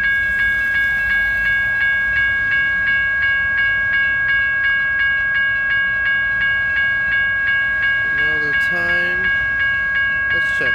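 Railroad crossing bell ringing in a steady, rapid, even rhythm at an active grade crossing, over the low rumble of a freight train's cars rolling away.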